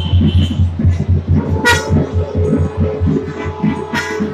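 Festival procession music: drums beating a steady rhythm under held piping tones, with a short loud toot about a second and a half in.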